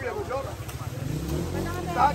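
Indistinct chatter of a crowd of people talking, over a steady low hum that grows louder about a second in.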